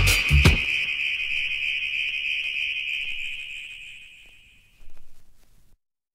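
End of a reggae riddim: a last couple of drum and bass hits, then a high, steady alarm-like electronic tone that fades out over about four seconds.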